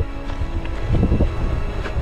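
Wind buffeting the microphone in a heavy, uneven low rumble, with background music playing underneath.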